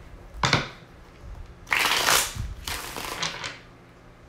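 A deck of tarot cards shuffled by hand: a short sharp riffle about half a second in, then a longer, louder shuffle around two seconds in, followed by a few shorter rustles.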